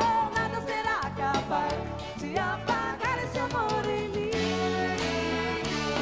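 Live forró band music: a wavering melody line over bass and a steady beat, then a long held note from about four seconds in.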